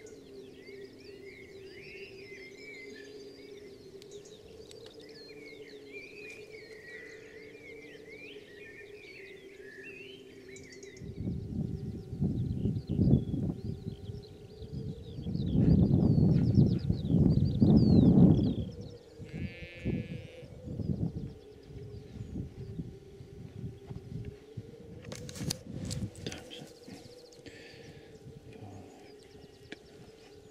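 Sheep bleating on open moorland, with warbling birdsong and a steady low hum in the first third. Through the middle, bursts of loud rumbling noise on the microphone drown the rest out, and a short call like a bleat comes just after them.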